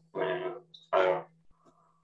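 A man's voice: two short hesitant utterances in the first second, then a pause, over a low steady hum.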